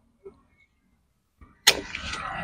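About a second and a half in, a single sharp snip of hand pruning shears cutting through a madre de agua (Trichanthera gigantea) stem, followed by the rustle of the leafy stems.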